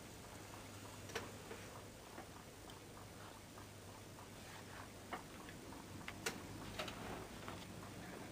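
A clock ticking faintly over a steady low hum, with a few sharper clicks about five to seven seconds in.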